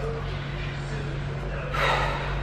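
A woman's breathy gasp near the end, over a steady low hum; she is worn out and tired.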